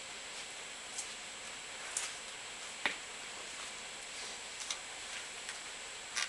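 A few faint, irregular clicks from handling a crimp terminal, a wire and a hand crimping tool as the terminal is set in the crimper's jaws, the sharpest about three seconds in, over a steady hiss.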